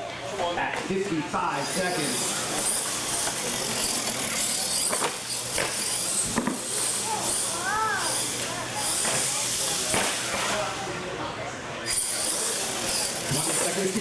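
R/C monster truck running on a concrete floor, its high motor and gear whine coming and going with the throttle, with occasional knocks from the truck. Crowd chatter runs underneath.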